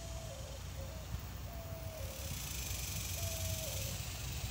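Faint animal call, repeated about four times at uneven intervals: each is a short held note that steps down to a lower one. A steady low rumble lies under it.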